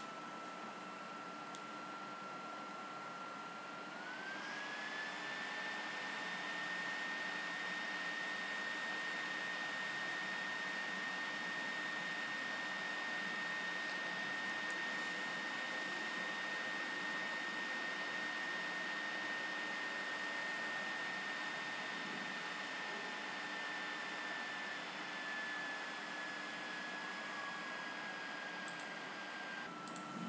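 Computer cooling fan whirring with a steady whine that rises in pitch about four seconds in, holds, and slowly drops again near the end: the fan speeding up while the computer works under load.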